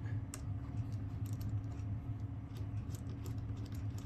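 Faint scattered clicks and ticks of a socket wrench turning a guitar tuner's hex bushing nut loose on the headstock, over a steady low hum.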